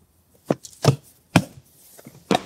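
Three sharp slaps, about half a second apart, of the kind a hand makes striking a hand or a thigh for emphasis.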